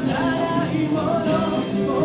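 A live rock band playing, with a sung vocal line over electric guitar and the rest of the band.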